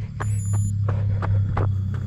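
Running footsteps on a dirt trail, about three a second, over a steady low hum. A brief high-pitched beep sounds shortly after the start.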